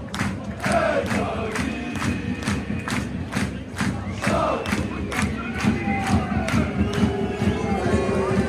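Football crowd in a covered stand chanting and shouting together, with rhythmic hand-clapping at a little over two claps a second.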